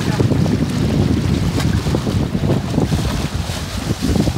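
Wind buffeting a phone's microphone out on the sea: a loud, gusting rumble, with the rush of open water beneath it.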